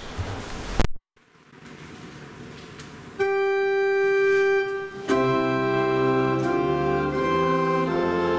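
Church organ playing the introduction to a hymn: a single held note comes in about three seconds in, then full sustained chords from about five seconds.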